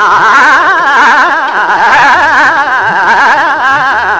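A male Hindustani classical vocalist holds a long sung note that shakes rapidly and evenly in pitch (a gamak), over tabla whose bass drum strokes swoop in pitch.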